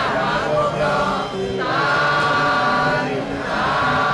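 A group of voices chanting a Buddhist chant in unison, drawing the syllables out into long held notes and breaking for breath about every second and a half.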